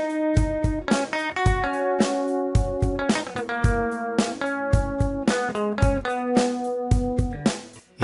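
Yamaha electric guitar playing a melody of sustained single notes over a steady drum beat. The music breaks off briefly just before the end.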